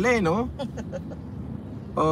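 A man's voice draws out a wavering "eh" for about half a second, then the low, steady hum of a car cabin on the move.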